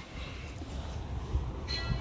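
Low rumble and soft knocks of a hand-held phone being carried and swung around, with a short high tone near the end.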